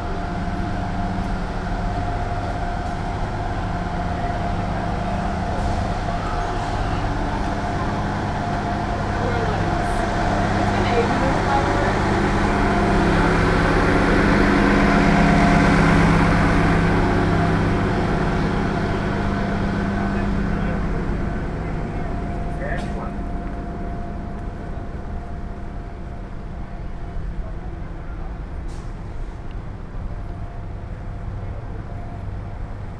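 A stationary transit bus with its engine running: a steady hum with a constant whine over it. It grows louder towards the middle as it is passed, then fades.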